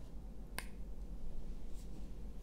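A single sharp click about half a second in, then a fainter tick near the end, over quiet room noise.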